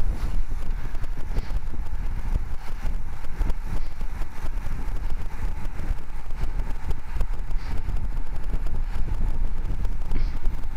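Wind buffeting the microphone of a camera riding on a road bicycle at speed: a loud, steady low rumble with a constant patter of small rattles from road vibration.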